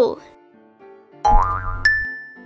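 Cartoon sound effect over light children's background music. A little over a second in comes a low thump with a short rising glide, then a bright ding near the end that rings on.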